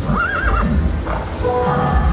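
A Pharaoh's Fortune slot machine plays a recorded horse neigh as its reels land on chariot symbols. About one and a half seconds in, steady win tones follow, signalling a line win.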